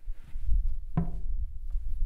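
Someone rummaging and knocking about while searching through a room, with a sharper knock about a second in.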